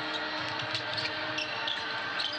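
A basketball being dribbled on a hardwood court, over the steady noise of an arena crowd.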